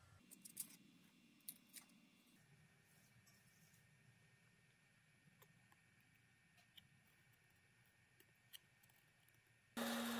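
Near silence: faint room tone with a few brief, faint clicks, one in the first second, two around a second and a half in, and one near the end.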